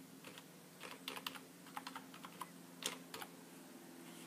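Computer keyboard keys being typed, about a dozen quick separate keystrokes over roughly three seconds as a password is entered, stopping a little after three seconds in.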